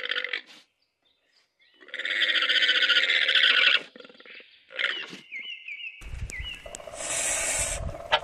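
Alpaca calling: one harsh, rasping call about two seconds long, starting about two seconds in.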